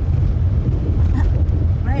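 Steady low rumble of a car driving along a rough dirt track, heard from inside the cabin.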